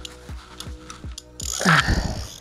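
Ice-fishing reel drag clicking in short, uneven strokes, about four a second, as a large lake trout pulls line off against it. A louder rustle comes near the end.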